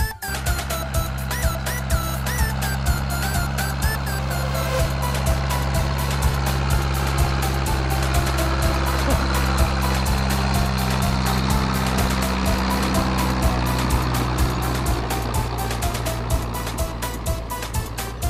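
Music with a steady beat, with a Massey Ferguson 175 tractor's engine running under load beneath it as it hauls a trailer of sand, loudest in the middle as it passes close.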